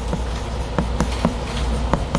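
Chalk writing on a blackboard: a string of short, sharp taps a few times a second as the chalk strikes and drags across the board, over a steady low hum.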